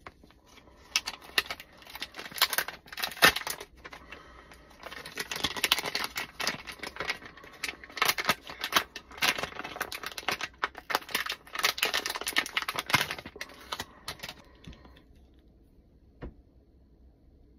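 A crinkly plastic retail package being handled and torn open: a dense, irregular run of crackles and sharp snaps, pausing briefly and dying away near the end.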